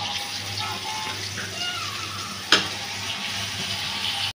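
Wet cut eggplant and potatoes sizzling steadily in hot oil in an aluminium pot while being stirred with a wooden spatula. One sharp knock about two and a half seconds in.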